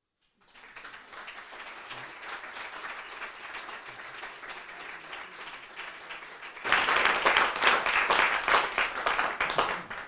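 Audience applauding, a dense patter of hand claps that gets much louder about two-thirds of the way through and dies down at the very end.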